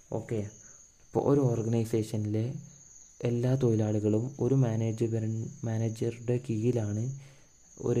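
A person speaking in short phrases with brief pauses, over a faint, steady, high-pitched tone that does not change.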